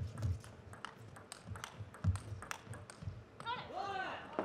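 Table tennis ball clicking sharply off bats and table in a rally, about three to four clicks a second, with soft thuds of footwork underneath. Near the end a voice calls out.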